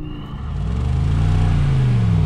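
Mercedes-AMG G63's twin-turbo V8 revving under load, its pitch rising over about a second and then falling again as the throttle is worked against the tow rope.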